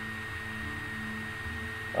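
Steady electrical hum with a faint high-pitched whine, the background noise of the recording.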